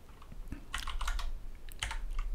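Typing on a computer keyboard: a short run of key taps, then a second brief run near the end.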